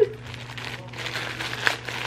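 Clear plastic zip bag crinkling in irregular rustles and small crackles as it is handled and pulled open.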